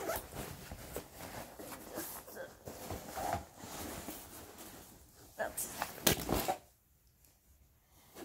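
A fabric backpack being handled and shifted about: irregular rustling with zipper sounds. It ends in a louder burst of rustling about six seconds in, after which it goes nearly quiet.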